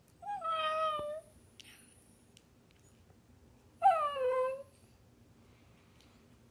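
Corgi puppy "talking": two drawn-out whining calls about three seconds apart, the first held level and the second sliding down in pitch.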